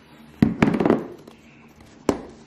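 Groceries and their packaging being handled: a sudden burst of crackling and knocking about half a second in that dies away within about a second.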